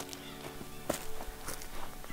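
Background music with a held chord that fades within the first second, and a few irregular footsteps on dry leaves and dirt.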